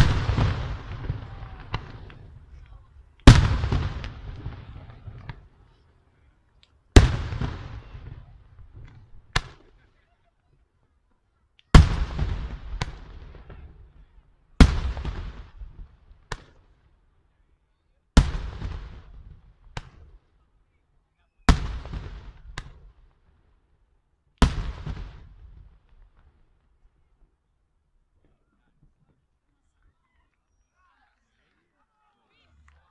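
Single aerial firework shells bursting one at a time, eight loud bangs in all, one every three to four seconds. Each bang is followed by an echo that rolls away over about two seconds.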